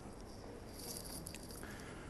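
Faint handling sounds as a car's hatchback boot lid is pulled down by hand: a soft rustle with a few light clicks, brighter about a second in.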